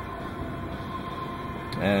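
Steady background hum and hiss with a faint constant high tone, no distinct handling noises; a spoken word begins near the end.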